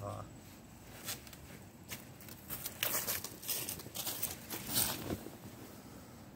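Footsteps crunching through dry fallen leaves, a run of irregular crackling steps that stops about five seconds in.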